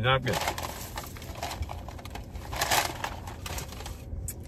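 Fast-food paper bag and wrapper rustling and crackling as it is searched through by hand, with a louder rustle about three-quarters of the way in.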